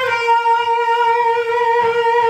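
Ibanez electric guitar holding a single sustained note, the landing of a slide to the 12th fret of the second string, ringing steadily after a quick run of notes.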